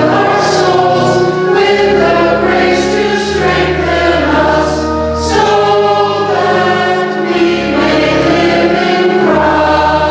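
A choir singing a liturgical hymn over an accompaniment that holds long, steady bass notes, each changing to a new pitch every couple of seconds.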